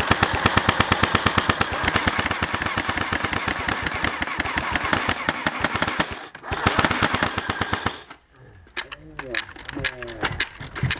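Fully automatic airsoft guns firing long, very rapid bursts. There is a brief break about six seconds in, and the firing stops about eight seconds in, leaving a few scattered clicks.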